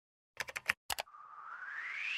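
Sound effects of a TV station's animated logo intro: a quick run of about six sharp clicks, like computer mouse or key clicks, then a whoosh that rises steadily in pitch from about a second in.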